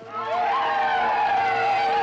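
Highland bagpipes striking in: the drones start together with the chanter, whose first notes slide up in pitch before it settles into a melody over the steady drones.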